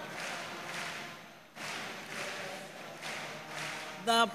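Soft hand clapping from a congregation, with no singing.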